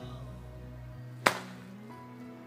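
A golf club strikes a ball off a tee on a hitting mat: one sharp crack about a second in. Under it plays a country song with a man singing.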